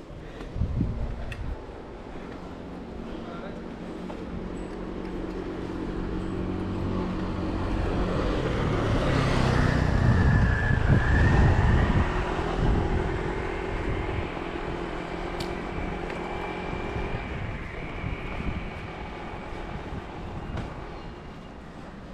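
A motor vehicle passing along the street: its engine hum builds slowly, is loudest about halfway through, then fades away.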